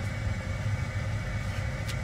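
Steady background hum of a CRJ-700 cockpit, a low drone with a faint steady high tone.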